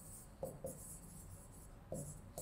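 Faint scratching of a marker pen writing on a whiteboard, with a few soft taps as the pen strokes start.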